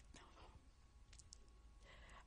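Near silence: room tone in a pause between words, with a few faint short clicks.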